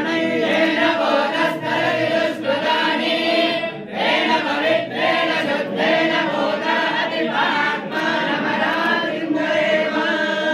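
A group of voices chanting Sanskrit mantras together in chorus, a continuous recitation.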